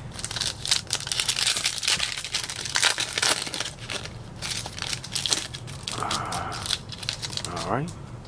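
A Panini Donruss Optic trading-card pack's plastic-foil wrapper crinkling as it is torn open, a dense run of sharp crackles over the first few seconds that thins out after about five seconds.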